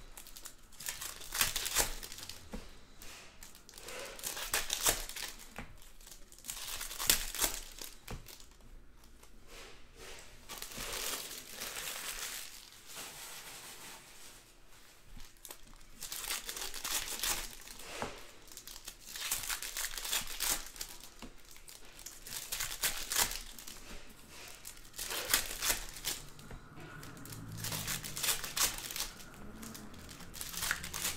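Foil wrappers of 2019 Bowman's Best baseball card packs crinkling and tearing as the packs are torn open by hand, in irregular bursts with short quieter gaps between them.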